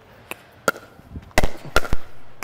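Pickleball paddles hitting a hard plastic ball during a quick drill of backhand rolls: a string of sharp pops, with the two loudest in the second half about half a second apart.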